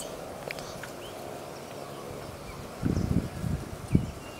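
Open-air hillside ambience with faint scattered bird chirps. A low rumble on the microphone and a knock come about three seconds in.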